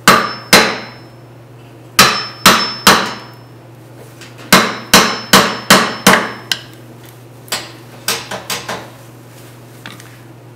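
Hammer tapping a steel tool set against a nail embedded in a green ash bowl, to dig the nail out: about sixteen sharp blows in bursts of two to six, the first few with a short metallic ring, the last four lighter.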